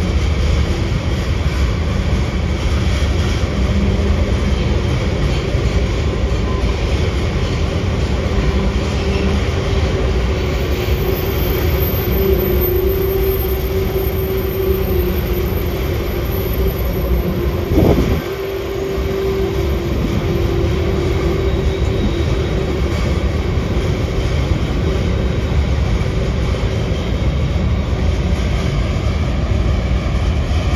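Freight train of tank cars rolling over an elevated viaduct: a steady loud rumble of wheels on rail. A steady humming tone runs through the middle stretch, and there is one sharp knock about eighteen seconds in.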